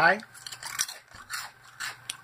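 Crisp beet chips being chewed: a few short, irregular dry crunches.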